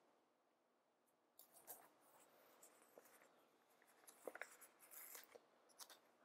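Near silence with faint paper rustles and small ticks: planner stickers being peeled from their sheet and pressed onto a paper planner page.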